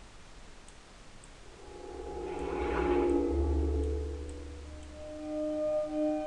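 Cinematic logo-trailer soundtrack playing from a computer with volume normalization switched on. It is faint at first. About two seconds in it swells with a deep bass rumble, then settles into sustained bell-like tones near the end.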